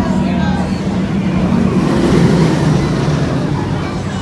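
Mako steel roller coaster train rumbling along its track, swelling to its loudest about halfway through and then easing off, over crowd chatter.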